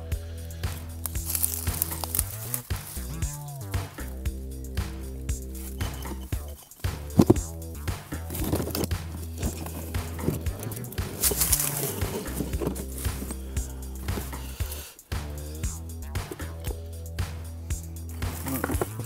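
Background music with a steady bass line and a repeating stepped melody.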